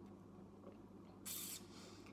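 Near silence: quiet room tone with a low steady hum, and one short hiss about a second and a quarter in.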